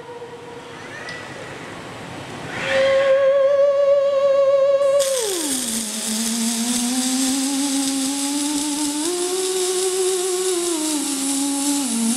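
Moog Etherwave theremin holding a wavering tone, then about five seconds in sliding down to a low pitch that drifts up and back down. From the same moment a steady hiss from two robotic welding arcs sounds under it.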